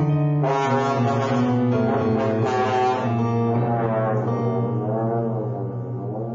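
Trombone playing: shifting notes at first, then a long held low note from about halfway, with higher tones bending up and down above it.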